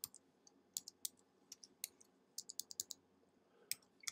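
Typing on a computer keyboard: about a dozen faint, irregular key clicks.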